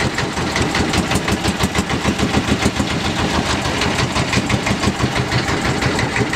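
Klotok river boat's inboard engine running under way with a rapid, even chugging knock, the klotok-klotok noise the boat is named after.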